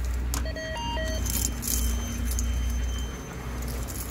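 Apartment-entrance door intercom panel accepting a universal key touched to its reader. A click, then a quick run of short beeps at several different pitches, followed by a faint steady high tone for a couple of seconds: the key has been accepted and the door unlocks.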